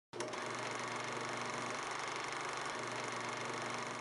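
A steady whirring noise with a faint hum in it. It starts with a click and begins to fade out at the end.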